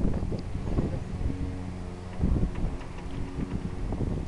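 Wind buffeting the microphone in uneven low gusts, over a steady low mechanical hum.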